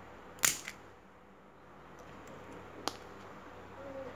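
Side-cutter pliers cracking through the hard plastic encasement of a small amulet: a loud sharp snap about half a second in, a smaller click just after, and another sharp snap near three seconds.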